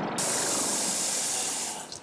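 Kitchen tap running water into a steel sink, a steady rushing that starts sharply and is shut off near the end. The tail of a falling whistle-like glide fades out as the water begins.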